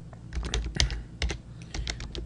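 Computer keyboard typing: a quick, irregular run of keystrokes, several a second, as a string of letters is typed in.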